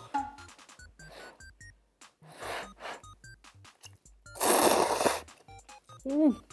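A person slurping ramen noodles: a couple of short slurps, then a long, loud one about four and a half seconds in, over light background music.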